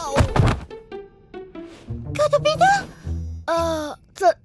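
A cartoon bump effect: a thunk at the start, followed by a run of short, separate music notes and wordless character vocalizations that slide up and down in pitch.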